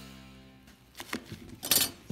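Background music fading out, then a few light clinks and a short rustle as metal parts are handled on a workbench.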